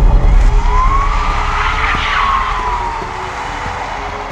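A car speeding past with a heavy low rumble, its whine rising and then falling as the noise swells to a peak about halfway through.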